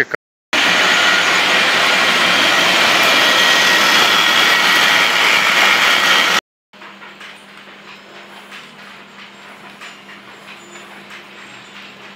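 Textile machinery in a yarn mill running with a loud, steady mechanical noise that cuts off suddenly about six seconds in. It is followed by a much quieter factory hum, a steady low drone with faint ticks.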